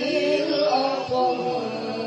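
A woman's voice reciting the Quran in melodic tilawah style, amplified through a microphone. She holds long, ornamented notes that waver and bend in pitch.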